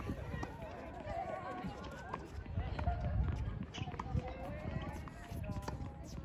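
Indistinct voices of several people talking at a distance, with a few short, sharp clicks scattered through.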